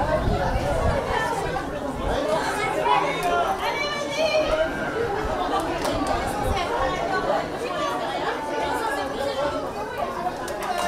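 Spectators chatting: many voices talking over one another, with no single voice standing out.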